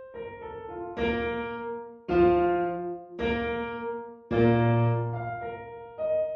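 Solo piano playing a moderato theme in separate, detached notes. Four loud chords, each about a second apart, begin about a second in, with softer single notes around them. The last chord has a deep bass note and is the loudest.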